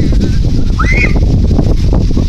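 Wind rumbling on a phone microphone, loud throughout, with a brief rising squeak about a second in.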